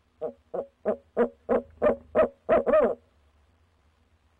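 Male barred owl hooting: a quick run of about eight hoots, roughly three a second, building in loudness, ending on a longer note that falls in pitch.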